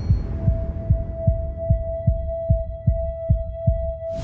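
Suspense heartbeat sound effect: low, evenly spaced heartbeat thumps about two and a half a second, with a steady high tone fading in under them within the first half second. Both cut off suddenly at the end.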